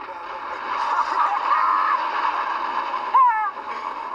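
Men laughing inside a car, over the steady noise of its engine running.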